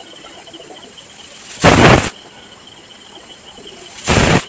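Aluminium stovetop pressure cooker venting steam through its weight valve: a short, loud burst of hissing about two seconds in, and another starting right at the end. The cooker is up to pressure and is letting off the steam bursts that are counted as whistles to time the cooking.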